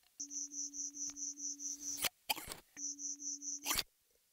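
Electronic tones from an experimental sound piece: a steady low hum with rapid high pips over it, about five a second, in two bursts. Each burst is cut off by a sharp click or crackle, with silent gaps between them.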